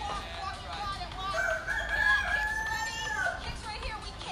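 A rooster crowing: one long call that starts about a second in, holds for about two seconds, then drops off.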